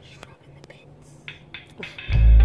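Faint whispered voice in short breathy bursts over a low, steady hum inside a car, with a few small clicks.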